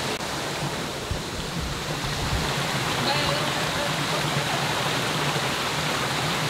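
Steady rushing of a shallow creek flowing over rocks.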